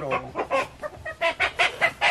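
Chickens clucking: a quick run of short, sharp clucks.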